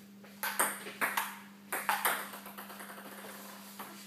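Table tennis rally: a ping-pong ball clicking sharply off paddles and the table, about six quick hits in the first two seconds, then one more near the end.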